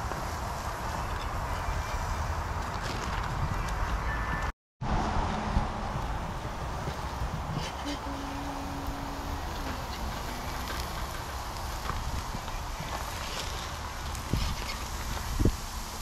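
Chicken breasts sizzling on a charcoal grill, with a few clicks of a metal spatula against the grate near the end. A low rumble of wind on the microphone runs underneath.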